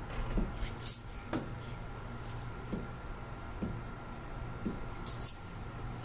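Faint, irregular thumps, some seven or eight spread over a few seconds, taken as a spirit stomping its feet on request. A couple of brief hissing sounds come in about a second in and near the end.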